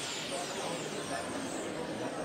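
Steady background ambience: an even, unbroken noise bed with no distinct events.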